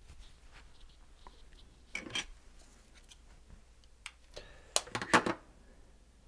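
Handling noise from a pair of budget wireless earbuds and their case: a few short plastic clicks and rubs, one about two seconds in and a cluster near the end, the last of them the loudest.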